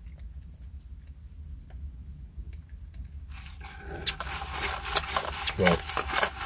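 Drink sucked up through a paper straw from a plastic cup. The sip is quiet at first, then turns into a noisy slurp about three seconds in, over a low steady hum.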